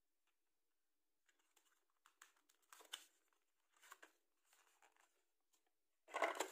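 Faint, scattered rustles, scrapes and light taps of a black cardboard box and its card insert tray being handled, starting about a second in.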